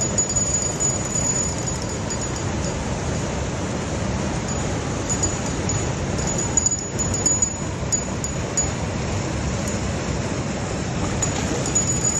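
Steady rushing of water pouring from a dam outlet into the river, heaviest in the low end, with a thin high whine that comes and goes.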